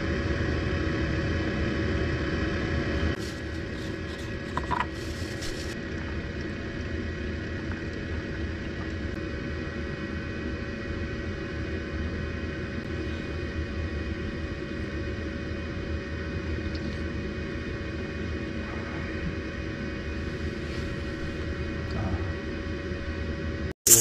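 A steady low mechanical rumble with a constant hum under it, a little louder for the first three seconds, with a few faint clicks a few seconds in.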